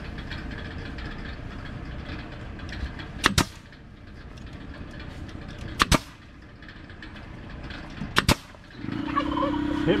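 Pneumatic stapler firing three times into the wooden framing, about two and a half seconds apart, each shot a sharp double crack. A louder steady hum starts up near the end.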